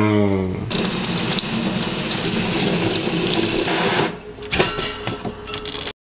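Water running from a kitchen tap: a steady rush for about three seconds, then quieter with a few clicks, and it cuts off just before the end.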